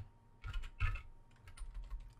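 Computer keyboard typing: two firmer keystrokes about half a second and a second in, followed by several lighter taps.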